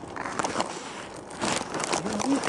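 Crackling and rustling handling noise from a camera being moved about and rubbed against by fabric or fingers, with irregular clicks and scrapes.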